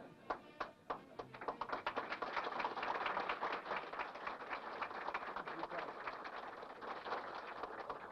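Audience applauding: a few separate claps at first, building within a couple of seconds into steady applause that stops abruptly near the end.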